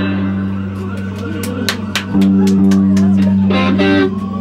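Live punk rock band playing loud: electric guitar and bass hold a low sustained chord, with a run of drum and cymbal hits in the middle.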